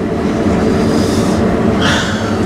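New Holland CR8.80 combine harvester running under load while cutting and threshing, heard from inside the cab: a steady drone with a constant low hum.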